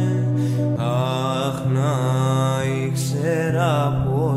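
A song: a sung vocal line with wavering pitch over steady sustained low notes of accompaniment.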